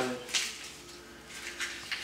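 A few short rustles of paper being handled and slid on a tabletop, one about a third of a second in and two close together near the end.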